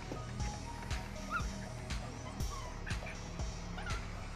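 Background music with a steady beat of about two a second, over which puppies give a few short, high whimpers, about a second in and again near the end.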